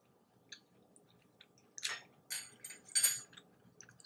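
Quiet eating sounds: a mouthful of quinoa being chewed, with a few soft clicks and short, crackly bursts in the second half.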